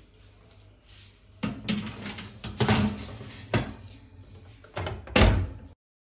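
Knocks and clatter as a tray of foil cake cups is slid onto a rack of an electric oven, then the oven door shut with the loudest thud about five seconds in. The sound cuts off abruptly right after.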